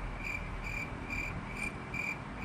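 A short, high chirp repeating steadily about twice a second, over low room noise.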